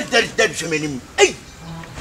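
A voice in short exclamations whose pitch falls, with a brief low hum near the end.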